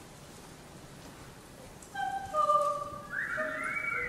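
A women's choir comes in after a quiet pause of about two seconds, with several held high notes, then high voices sweeping up and falling back near the end.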